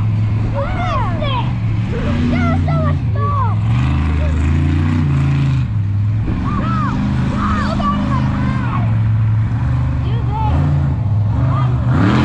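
Monster truck engine running and revving in the arena, its pitch shifting up and down in steps, with people's voices carrying over it.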